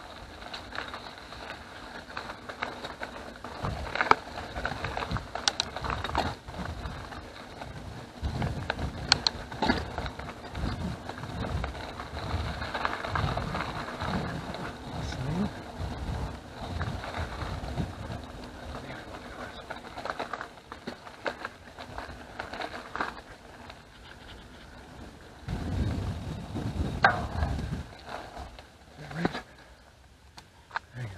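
Mountain bike riding on a rough gravel and dirt road: a steady rumble of tyres on the surface, with scattered clicks and rattles from the bike over bumps and wind on the microphone. A louder stretch of rumble comes about 26 seconds in.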